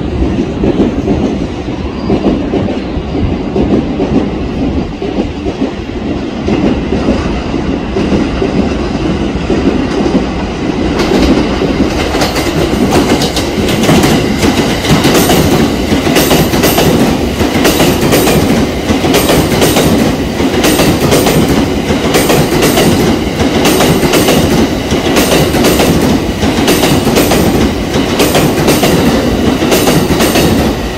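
JR West 683 series electric limited express train, twelve cars, pulling into the station: a steady rolling rumble, with rhythmic clacks of the wheels over rail joints and points starting about eleven seconds in and coming more often after that.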